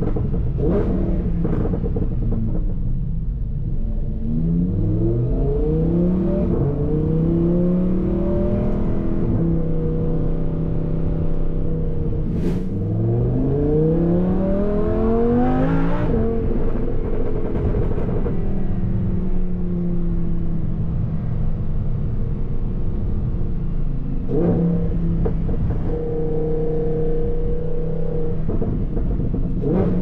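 Lamborghini Huracan LP580-2's naturally aspirated V10 heard from inside the cabin while driving, rising in pitch under acceleration twice, about four and twelve seconds in, and running at a steady cruise between pulls.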